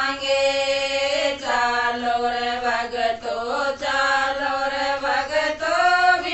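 Women singing a Haryanvi devotional bhajan in a slow, chant-like line of long-held notes.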